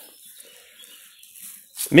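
A pause between a man's words: only a quiet, even outdoor background, with his voice starting again right at the end.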